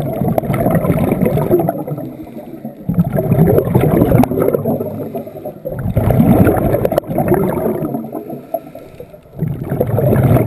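Scuba diver breathing through a regulator underwater. Each exhalation sends out a burst of bubbles lasting about two seconds, and the bursts recur about every three seconds with quieter inhalation gaps between.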